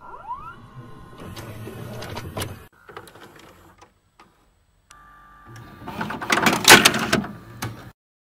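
Videocassette recorder sound effects: a rising whine and clicks, then the whirring of the tape mechanism. After a short pause comes a brief steady tone, then a loud burst of hiss and rapid clicks.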